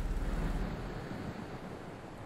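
Faint, even background ambience of a film scene, with no voice or music, growing slightly quieter; a low hum drops out under a second in.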